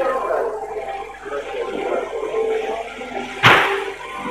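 Indistinct background talking, with a sudden loud rush of hiss about three and a half seconds in that fades within half a second.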